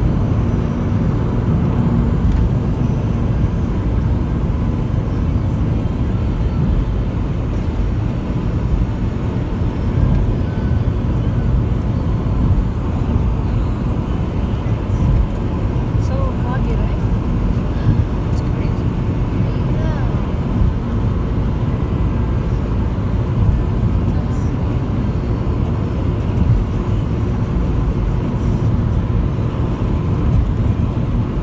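Steady low rumble of a car driving at highway speed, heard from inside the cabin: tyre and engine noise.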